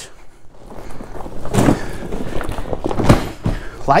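Deflated inflatable kayak being unrolled across a table: the heavy hull fabric rustles and drags, with two thumps about one and a half and three seconds in, the second louder.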